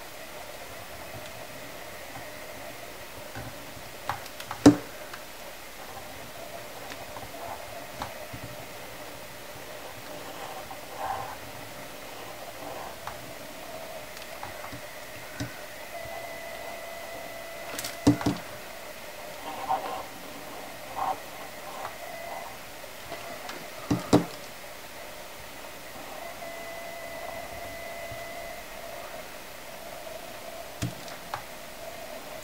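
Quiet handling sounds of a fine-tip Sharpie writing on a painted wooden hanger, with a faint steady hum that comes and goes. Three sharp knocks stand out, about five, eighteen and twenty-four seconds in, as the hanger and marker are handled on the board.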